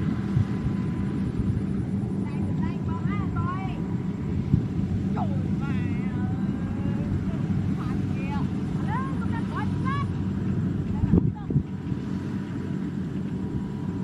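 Steady low drone of an engine running, with birds chirping in short rising and falling calls over it, and a thump about eleven seconds in.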